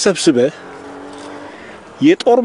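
A man's voice speaking a short phrase, then a pause of about a second and a half in which only a faint steady hum and open-air background remain.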